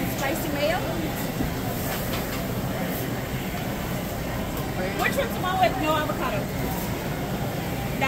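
Store ambience: indistinct voices of people nearby, coming and going, over a steady background noise, with a cluster of voices about five to six seconds in.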